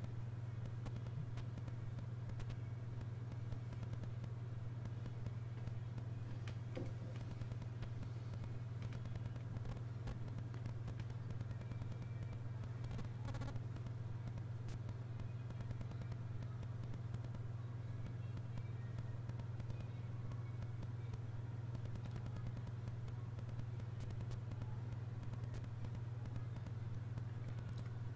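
A steady low hum, like background room tone, with no other sound apart from a faint click about 13 seconds in.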